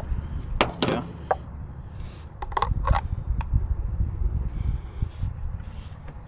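Several sharp metallic clicks and taps in the first three and a half seconds: a small piece of scrap sheet metal being handled, set onto and pressed against a steel pontoon tube as a patch over a hole filled with marine-weld epoxy.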